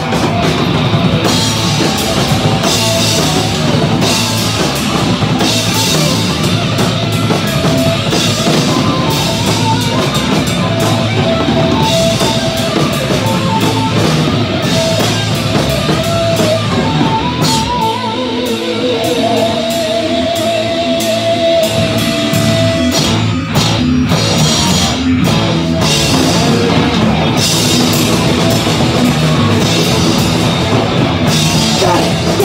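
A live rock band playing loud, with distorted electric guitars and a drum kit with crashing cymbals, heard up close. A held, wavering note rings over the band for a few seconds about two-thirds of the way through.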